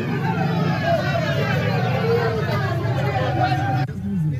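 A vehicle's engine running on the move, a steady low hum under people talking. The sound cuts off abruptly near the end.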